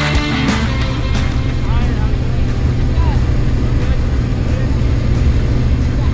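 Cabin noise of a light single-engine jump plane in flight: the engine and propeller drone steadily at a constant pitch, under a wash of rushing air. Rock music fades out just after the start.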